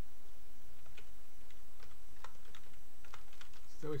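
Typing on a computer keyboard: a quick run of about a dozen separate keystrokes, starting about a second in.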